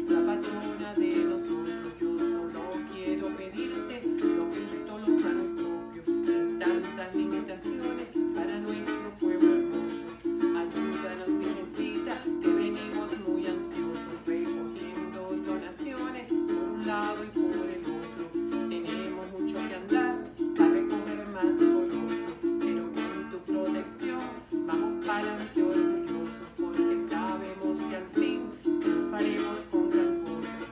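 A small four-string guitar strummed in a steady, even rhythm of chords, with a woman singing along.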